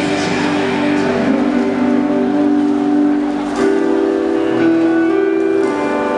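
Punk rock band playing live: electric guitars holding sustained chords over bass and drums, with a couple of cymbal strikes in the second half.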